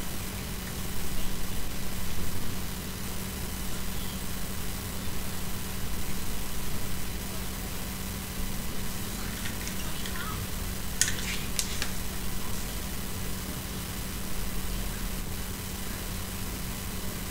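Steady background hiss with a constant low hum, and a few short scratchy sounds about eleven seconds in.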